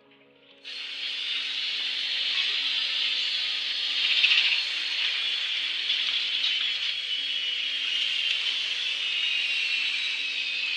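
A loud, steady rushing hiss starts suddenly just under a second in and carries on over a faint, steady low hum.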